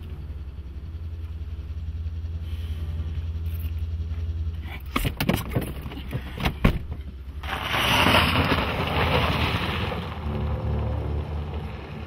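A car's engine runs low and steady, with a few sharp knocks about five to seven seconds in. Then a loud rush of tyres on gravel starts as the car pulls away.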